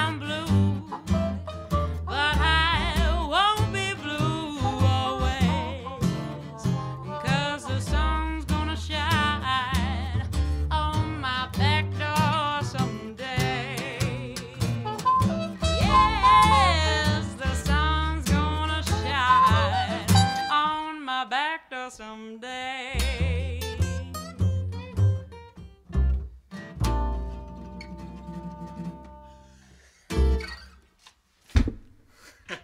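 Acoustic blues band playing: a woman singing over upright bass, strummed acoustic guitar and trumpet. After about twenty seconds the singing stops and the playing thins out, ending on a long held note.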